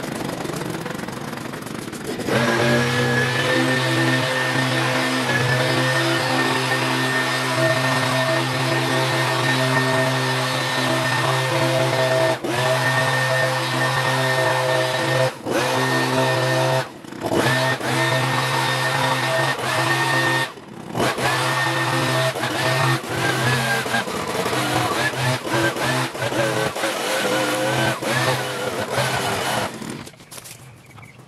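Handheld leaf blower's small engine, ticking over quietly, then opened up about two seconds in and held at high revs as it blows clippings along a path, with a few short dips in speed when the throttle is eased.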